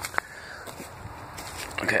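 Faint rustling of footsteps on dry leaf litter, with one sharp click a moment in; a man's voice comes in briefly at the end.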